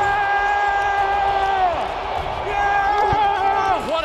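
A voice holding two long, drawn-out notes, each sliding down in pitch as it ends, over a background of crowd noise.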